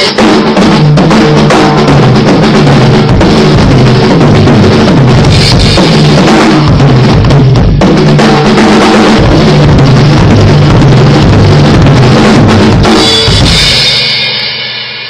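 Mapex M Birch Series drum kit, with birch-ply shells, played as a full kit: bass drum, snare, toms and cymbals together in a continuous groove, fading away near the end.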